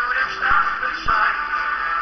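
Small toy music box playing its tune as its crank is turned.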